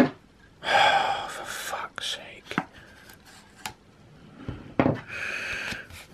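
A man's exasperated breathy sighs and groans, with stiff card stock clicking and rustling in his hands as he tugs at a card envelope; a few sharp clicks come in the middle.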